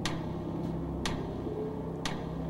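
Game-show countdown clock ticking once a second over a steady low music drone, marking the contestant's 30 seconds to answer running down.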